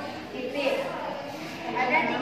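A girl's voice reading aloud from a sheet of paper in a classroom, with some echo from the room.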